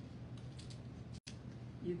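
A sheet of printed paper handled and torn by hand along its edge: a few short, faint rips and rustles.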